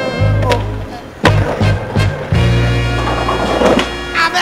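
Skateboard sounds over background music: a skateboard's wheels rolling and the board clacking on impacts, with the sharpest clack about a second in.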